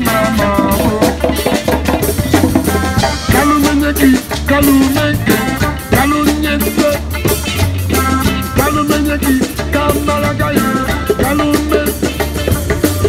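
A live street band playing an upbeat, ska-like song: electric and acoustic guitars over a drum kit and hand drums with a steady beat, and a sung vocal line.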